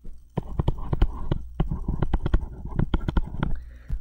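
Stylus tapping on a tablet screen while handwriting: a quick, irregular run of hard little clicks as a short label is written.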